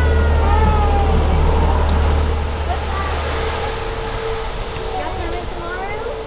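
Bus engine idling with a steady low rumble that drops away a few seconds in, under a faint steady higher hum.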